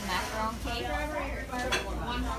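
Bakery café background: people talking and dishes and cutlery clinking, with one sharp clink near the end.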